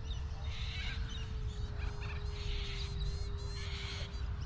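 Distant electric RC plane, an E-flite Cirrus SR22T, its motor and propeller giving a faint steady hum that sinks slightly in pitch. Under it is a low wind rumble on the microphone, and small birds chirp now and then.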